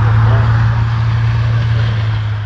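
Steady low drone of a vehicle engine running at one unchanging pitch, over a haze of traffic noise.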